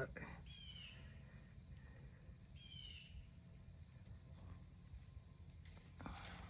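Faint, steady, high-pitched chirring of insects outdoors, with two short chirps about two seconds apart that slide down in pitch.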